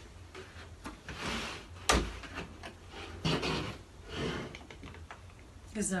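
Handling noises at a hinged wooden silkscreen printing frame: several short scraping or rubbing swishes and one sharp knock about two seconds in, the loudest sound.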